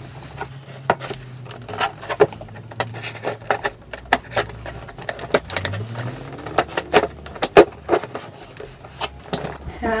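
A cardboard shipping box being handled and opened by hand: a string of irregular knocks, taps and scrapes on the cardboard.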